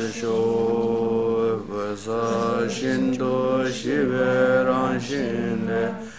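Tibetan Buddhist prayers chanted by a man's voice on a nearly level recitation pitch, in long held phrases separated by short breaths.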